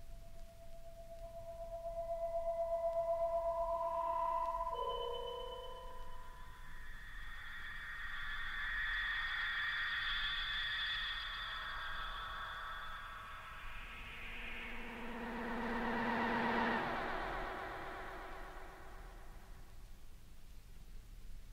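Electronic tape music from the late-1960s Czechoslovak Radio studios: held oscillator tones layered over one another. A steady tone gives way to a higher one and drops about five seconds in, then a dense cluster of high wavering tones swells twice, a low tone joining the second swell, and fades near the end.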